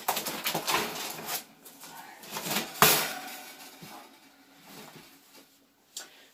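Handling noises as a pigeon is caught by hand on a wire cage top: a run of rustles and small clicks, one sharp click about three seconds in, then fading to quiet.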